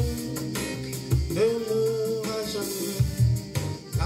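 Playback of a home-produced afrobeat gospel song mixed in GarageBand: a sung melody over a band backing of bass and percussion. The producer thinks the piano part is not playing in the mix.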